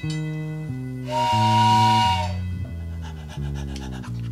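A short live-band music bridge: a bass guitar plays a stepping line of held notes. About a second in, a breathy harmonica chord is held over it for about a second.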